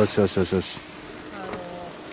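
A short spoken call in the first half-second, then the steady scraping hiss of ski edges carving over hard-packed, groomed snow as a racer turns through the gates.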